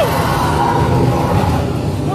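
Loud, dense haunted-maze soundscape: a low rumble with rough, growling noise and faint held tones, and a falling tone at the very start.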